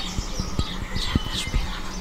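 Birds chirping in short, rapidly rising and falling calls, over a steady low hum and scattered soft low clicks.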